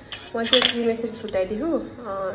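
A metal spoon clattering against a stainless-steel bowl and other kitchenware, loudest in a short burst about half a second in.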